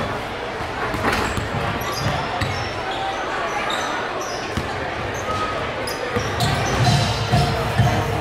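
Basketballs bouncing on a hardwood gym floor during warmups, a scatter of sharp knocks over the murmur of a crowd in a large hall. A low pulsing sound grows louder near the end.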